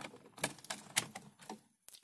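A few faint, scattered light clicks and taps with quiet between them, typical of small objects or the camera being handled on a workbench.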